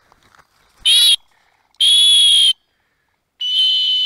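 A dog-training whistle blown three times as signals to a working German shorthaired pointer: a short blast about a second in, a longer one around two seconds in, and a third, longest blast near the end, each a high steady tone.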